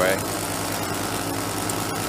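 Paramotor engine and propeller running steadily in cruising flight, a constant low drone with no change in pitch.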